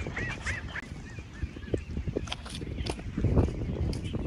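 Ducks calling: a quick run of short calls in the first second or so, then fainter, over a steady low rumble with a few light clicks.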